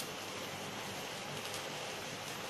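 Steady, even background hiss with no distinct knocks or scrapes standing out.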